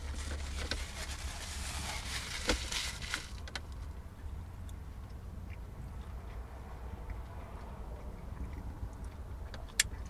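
A man chewing crunchy beer-battered fried fish with tartar sauce, the crackly crunching and a few sharp clicks loudest in the first three seconds, then softer. A steady low hum runs underneath.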